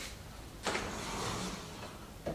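Wardrobe sliding door being rolled open along its track. It starts with a short knock about two-thirds of a second in, then a soft, steady rolling noise lasts about a second.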